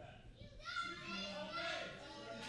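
A child's voice shouting from the crowd, faint and high-pitched, from about half a second in until near the end.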